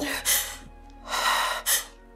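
A person's sharp, breathy gasps over soft background music: a short breath early, a longer one near the middle, and a quick one just after it.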